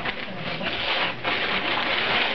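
Wrapping paper and tissue paper being torn and crinkled off a cardboard gift box, a dense papery rustle that surges unevenly.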